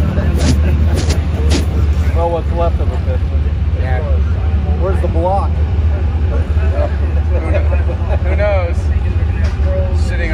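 Muffled voices of people talking over a steady low hum, with a few knocks of handling noise on the microphone in the first second or two.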